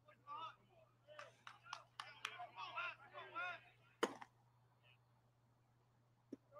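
Faint voices talking, with a few sharp clicks among them and one louder knock about four seconds in, over a low steady hum.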